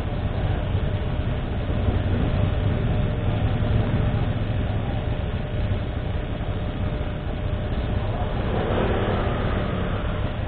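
A motorcycle engine idling steadily.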